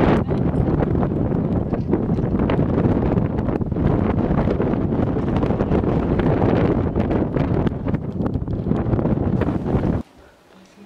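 Strong wind blowing over the camera microphone, a steady low rumble that swells in gusts.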